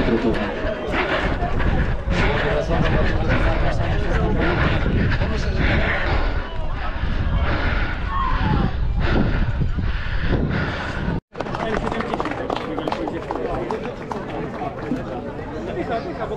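Voices of people talking over a low rumble. The sound drops out to silence for a moment about eleven seconds in, then the talking goes on without the rumble.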